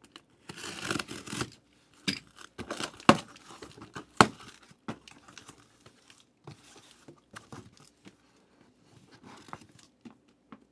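A utility knife slicing the tape on a cardboard shipping case, then the cardboard flaps being pulled open and the case handled. Two sharp knocks, about three and four seconds in, are the loudest sounds, with softer cardboard rustling after.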